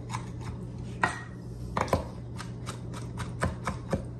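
Kitchen knife chopping maraschino cherries on a wooden cutting board: a series of irregularly spaced knife strikes on the board.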